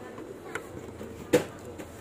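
Handling noise with a few short clicks, the loudest a sharp click a little over a second in, over a faint steady hum.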